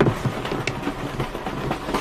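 Steady rumble of a moving railway carriage from inside the compartment, with small rattles and clicks and a sharp knock right at the start.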